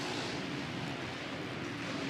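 Supercross motorcycle engine running hard at racing speed, heard through the bike's onboard camera as a steady, dense rumble with rushing noise.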